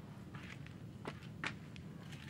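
A few faint footsteps and scuffs on a dirt yard, soft and spaced out.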